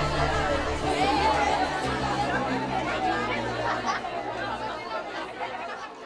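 Indistinct chatter of several voices over music with held low notes, the chord changing about halfway through. Everything fades out over the last few seconds.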